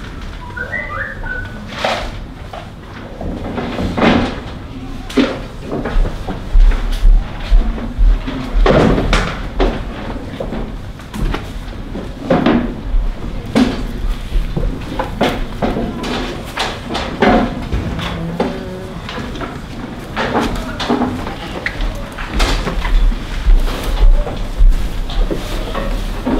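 Irregular knocks and clanks of goats moving against metal pen railings and feeders in a barn, with a low rumble on the microphone.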